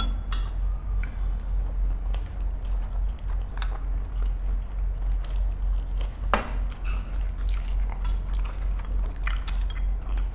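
Close-miked chewing of shredded chicken and rice, with scattered small clicks of spoons and chopsticks against bowls and one sharper click about six seconds in, over a steady low hum.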